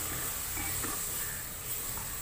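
Chicken curry masala sizzling steadily in an aluminium pressure cooker pot as it is stirred with a spatula.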